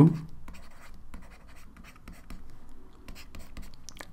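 A stylus writing on a tablet: a run of short, irregular scratches and light taps as letters are drawn stroke by stroke.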